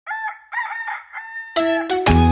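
A rooster crowing cock-a-doodle-doo as a wake-up sound effect, in two phrases with a short break about half a second in. About one and a half seconds in, the instrumental music of a children's song comes in.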